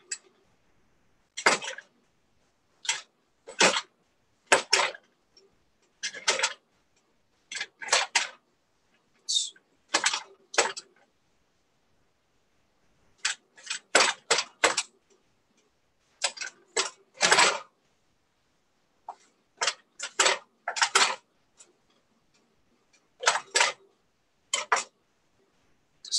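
Chef's knife chopping pink oyster mushrooms on a plastic cutting board: short sharp knocks in ones and twos, irregularly spaced, with a pause of about two seconds near the middle and dead silence between strokes.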